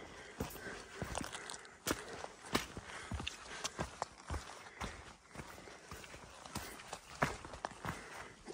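A hiker's boot footsteps on a wet, rocky trail, with sharp irregular clicks of one or two a second from trekking-pole tips striking rock.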